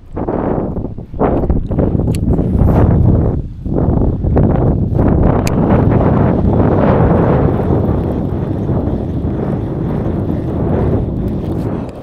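Strong wind buffeting the microphone: a loud, low rush with a few brief lulls in the first five seconds, then steady.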